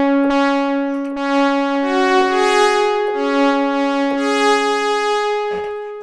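Sequential Prophet-5 analog synthesizer playing a brassy sawtooth patch in held chords that change every second or so, fading out shortly before the end. Its attack and release have just been adjusted.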